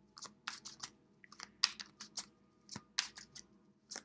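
Hands shuffling a deck of oracle cards: a run of irregular crisp snaps and rasps as the cards slide and riffle against each other.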